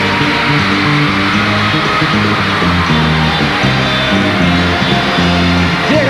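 Live stage orchestra playing an instrumental passage with no singing: a bass line moving in short held notes under a steady bright wash of sound.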